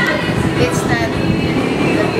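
A woman talking over a loud, continuous background rumble that runs without a break.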